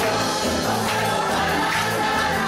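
Gospel music: voices singing together over instrumental accompaniment with a strong bass and a steady beat.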